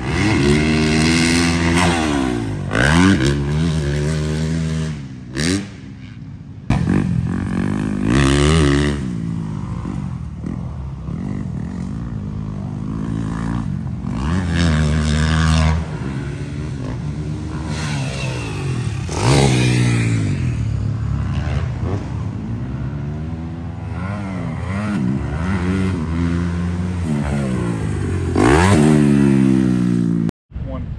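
Dirt bike engines revving hard around a motocross track, several passes one after another, each engine's pitch climbing through the gears and then dropping as the bike goes by.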